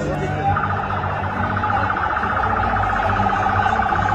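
A siren with a rapid warbling flutter, holding a steady pitch, begins about half a second in and sounds over the noise of a crowded street.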